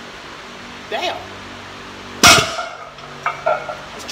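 A loaded barbell with cast-iron plates set down hard on a concrete floor about two seconds in: one loud metallic clang that rings briefly, followed by two smaller clinks as the plates settle. A short grunt or breath comes about a second in.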